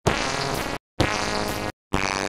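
Heavily distorted, effects-processed audio clip chopped into two short blocks of under a second each, with brief silent gaps between them.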